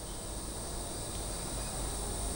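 Pause in speech: steady background sound of a continuous high-pitched whine over a faint low hum, with nothing else happening.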